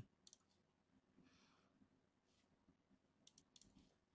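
Near silence broken by a few faint computer mouse clicks.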